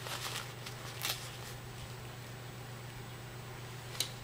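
A small fabric drawstring pouch rustling as it is handled and pulled open by hand: a couple of brief rustles in the first second, over a steady low hum.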